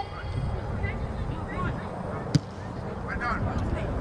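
Outdoor soccer-field ambience: faint, distant shouts from players, a low rumble on the microphone, and one sharp knock a little over two seconds in.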